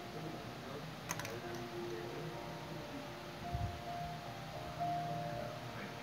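Background music, a slow melody of held notes. About a second in there is a short rattle of clicks, and midway a single dull thump, from hands working at the cork of a wine bottle.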